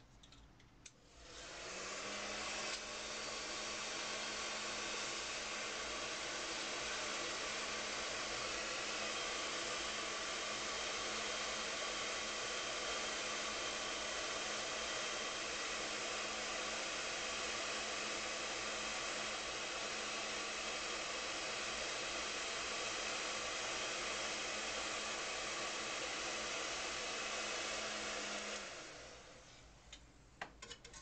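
Steady rush of blown air drying a chip carrier after its IPA rinse, with a faint low hum under it; it starts about a second in and dies away near the end.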